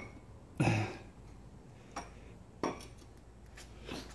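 Light knocks and clinks of metal exhaust tubing being handled: four sharp taps spread over a few seconds, the first and loudest with a short hollow ring.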